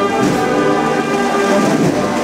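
Brass band playing a processional march, holding sustained chords.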